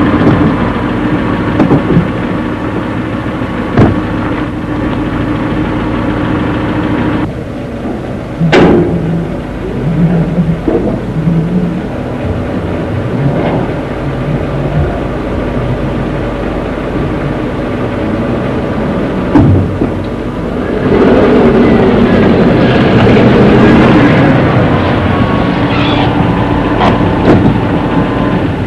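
A car engine running as a small car drives up and pulls in. The sound changes suddenly about seven seconds in, a sharp click comes a second later, and it grows louder again for the last few seconds.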